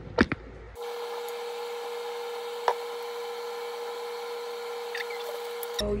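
A few short clicks, then a steady machine-like hum with a clear mid-pitched tone for about five seconds, with a single click partway through. The hum starts and cuts off abruptly.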